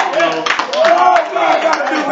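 A man preaching in a raised voice with drawn-out, rising and falling tones, over scattered hand clapping from the congregation.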